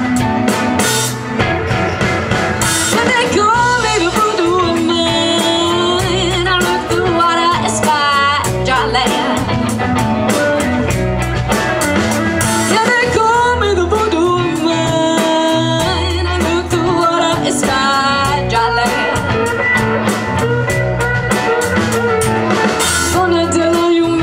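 Live blues-rock band playing, with electric guitars over a drum kit.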